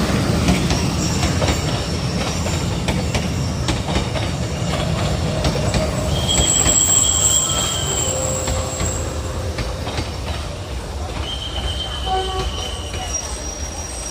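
Passenger train coaches rolling slowly along the platform with a low rumble that gradually fades as the train brakes to a stop. High-pitched wheel squeals come in twice, about six seconds in and again near the end.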